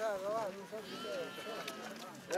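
Voices of several people talking as they walk, with a thin, steady high tone lasting about a second in the middle.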